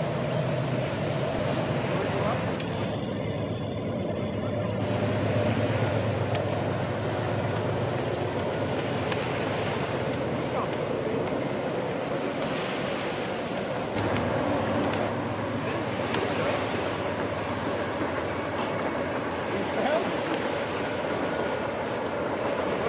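A distant Amtrak Empire Builder passing: the steady drone of its two GE P42DC diesel locomotives over the rumble of the train rolling along the rails.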